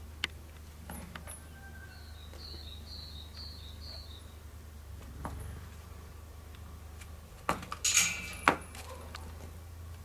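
A small bird chirping about five short notes from about two seconds in. Near the end, a burst of loud metallic clinking and rattling from the stallion's tie chain as he moves on it.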